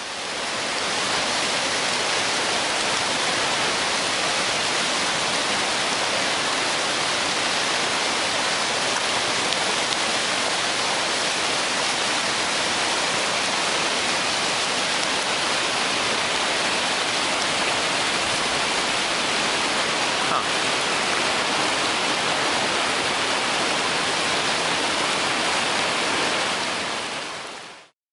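Steady rushing of Class IV whitewater rapids, fading in at the start and fading out at the end.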